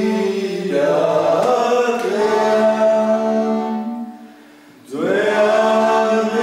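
Two male voices singing long held notes over accordion and guitar. About four seconds in the sound drops away briefly, then the voices come back in with a rising slide into the next held note.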